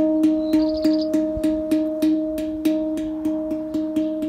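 A steel handpan's side note field tapped rapidly and evenly, about three to four strikes a second, keeping one ringing note going steadily so a tuner app can read it. The note reads close to true pitch at the 440 Hz reference, showing the pan is a 440 Hz instrument and cleanly tuned.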